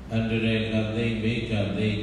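A Buddhist monk's voice chanting a recitation, each syllable held on a steady, level pitch.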